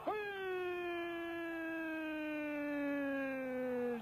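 A football commentator's long drawn-out shout of 'Gol!', one held note for about four seconds, slowly falling in pitch.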